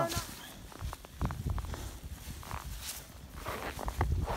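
Snow crunching and scraping in irregular bursts as a child crawls and digs in deep snow, with low rumbling on the microphone.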